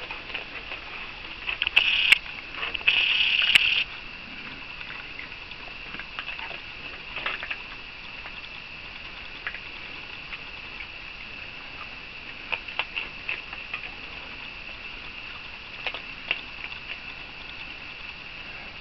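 Raccoons eating dry pet-food kibble off a wooden deck: scattered small crunches and clicks as they chew and pick up the pellets, with two louder bursts of crunching about two and three seconds in.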